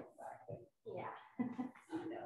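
Indistinct talk from people in a room, short phrases coming and going, too unclear to make out words.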